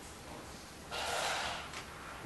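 A person's short, breathy exhale about a second in, lasting under a second, followed by a faint tick.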